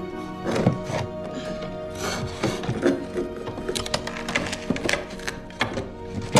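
Sustained film score music with held tones, and several short knocks and scrapes of a hand feeling around inside a cavity behind wooden wall boards.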